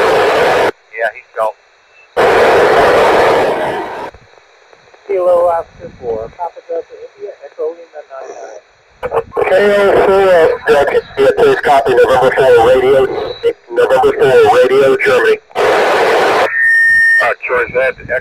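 Tevel-5 FM amateur satellite downlink coming through an Icom IC-2730A transceiver's speaker: garbled voices of operators calling, broken by bursts of static hiss and drop-outs as signals fade in and out. A short steady beep sounds near the end.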